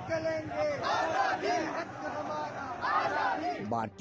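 Crowd of protesters shouting slogans together, in repeated shouted phrases about a second apart.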